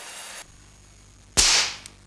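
A pressurised plastic fire-detection tube bursting: one sharp pop about halfway through, followed by a short hiss of escaping extinguishing gas that fades within half a second.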